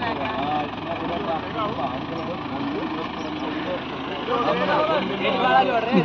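Diesel tractor engine idling steadily as a low hum, under several men talking, with the talk growing louder in the last two seconds.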